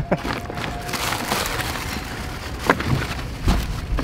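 Handling noise from unpacking a new inflatable dinghy: rustling with a few sharp knocks, the clearest about two thirds of the way in and near the end, over a low rumble.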